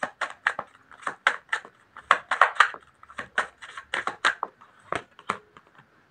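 Tarot cards being shuffled by hand: a quick, irregular run of crisp card clicks and riffles, several a second, stopping shortly before the end.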